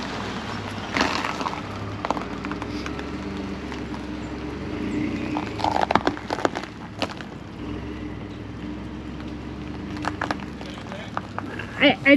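Pickup truck engine running steadily under load as it starts to tow a travel trailer out across snow and bare ground, with a few short crunches or knocks about a second in, around the middle and near the end.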